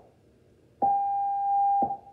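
The National Research Council of Canada's official time signal: after a short pause, the long dash, a single steady beep lasting about a second that cuts off cleanly. Its start marks exactly noon, Eastern Daylight Time.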